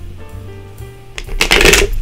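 A deck of tarot cards being shuffled by hand, with one brief loud rush of cards about one and a half seconds in. Quieter background music with held low notes plays underneath.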